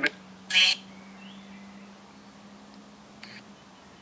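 Necrophonic ghost-box app on a phone speaker giving out one short voice-like fragment about half a second in, over a faint steady hum; a fainter blip follows near the end.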